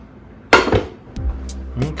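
A nonstick frying pan set down with one clank and a brief ring about half a second in. Background music with a steady low bass comes in a little after a second.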